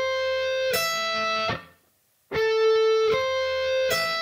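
Electric guitar playing a slow A minor arpeggio, one sustained note at a time, rising A, C, E as the pick sweeps down through the third, second and first strings with rest strokes. The rise ends about a second and a half in, and after a short silence the same three rising notes start again.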